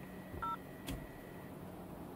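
A single short two-tone electronic beep from the mirror dash cam's touchscreen as a button is tapped, followed about half a second later by a faint click.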